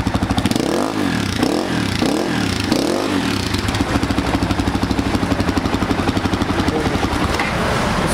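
Dirt bike engine idling, blipped up and back down three times in quick succession about one, two and three seconds in, then settling back to a steady idle.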